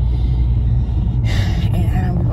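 Steady low rumble of a moving car's road and engine noise heard inside the cabin, with a short hiss a little over a second in.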